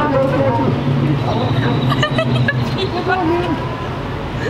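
Indistinct voices of several people over a steady low hum.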